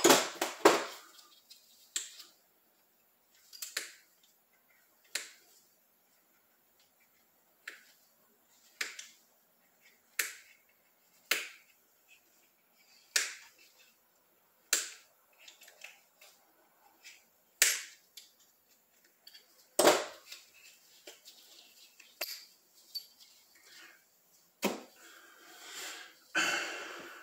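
Sharp, irregular clicks and taps of metal hand tools and small brake-cylinder parts being handled and set down on a steel workbench, roughly one every second or two.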